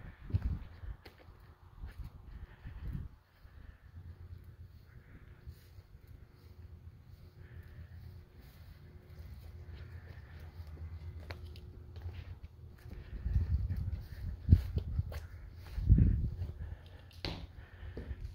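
Footsteps of someone walking through grass and onto a gravel floor, over a low rumble on the microphone, with a few heavier thumps about three-quarters of the way through.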